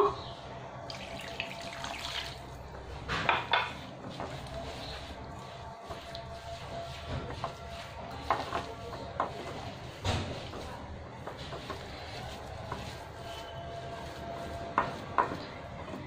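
Water poured from a glass onto fine semolina, then hands rubbing and squeezing the damp semolina in a glass bowl to knead it into dough, with a few short louder knocks and rustles.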